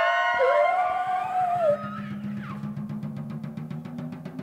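Big-band jazz brass section holding a chord that rises slightly and ends with a fall-off about two seconds in. A low sustained note follows under a rapid drum roll that builds toward the end.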